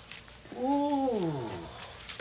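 A woman's drawn-out wordless vocal sigh, held level and then falling in pitch, lasting about a second.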